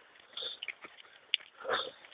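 A running person's heavy breathing close to the microphone: two breaths about a second apart. Short sharp knocks from footfalls and the jolting handheld camera come in between.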